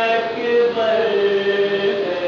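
A man chanting an Urdu mourning lament (noha) for the Shaam-e-Ghareebaan majlis, in a slow, drawn-out melody of long held notes.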